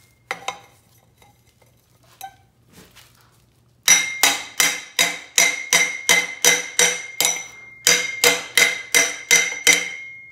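A metal tube rammed repeatedly against the YFZ450's aluminium bearing carrier to drive it out of the swingarm: after a few light clicks, about sixteen sharp, ringing metallic knocks at roughly three a second, with a short pause partway through.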